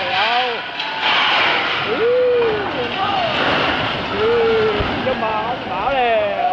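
A three-storey brick building collapsing: a long crashing, rumbling noise that builds about a second in and runs for several seconds, with people shouting over it.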